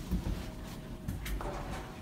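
Schindler 330A hydraulic elevator starting up: a low rumble with a faint steady hum that sets in just after the start, and more hiss from about halfway through.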